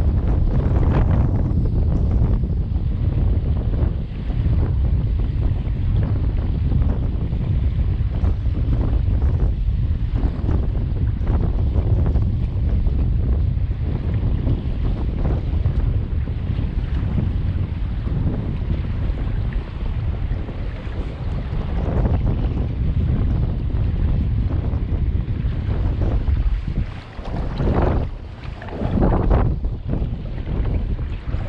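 Strong wind buffeting the camera microphone, a steady low rumble, with choppy water lapping against the kayak's hull. The wind eases briefly twice near the end.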